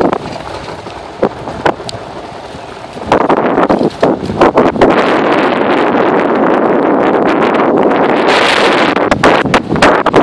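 Wind buffeting the microphone of a moving off-road vehicle on a rough dirt trail, with scattered knocks and jolts. About three seconds in it becomes much louder and stays loud as the vehicle picks up speed.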